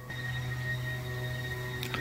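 A steady low hum with faint higher tones above it, beginning abruptly and holding level throughout, with no change in pitch and no rhythm.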